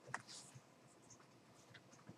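Near silence, with a faint computer-mouse click shortly after the start and a brief soft scrape of the mouse moving right after it.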